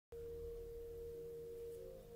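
Faint background relaxation music starting up: a steady held tone, much like a singing bowl, with a second tone joining near the end.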